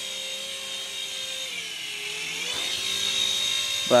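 Toy RC helicopter's electric motor and rotors running with a steady high whine; about midway the pitch sags for a second and then climbs back up.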